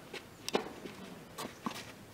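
A tennis ball struck by a racket at the far end of the court about half a second in, followed by a few lighter taps of the ball bouncing and shoes stepping on the clay court.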